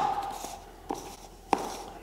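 Plastic lid being pressed and twisted onto the 32-ounce paint cup of a Graco TC Pro handheld airless sprayer to seal it airtight: a sharp click at the start, a faint tick about a second in, and another sharp click about one and a half seconds in.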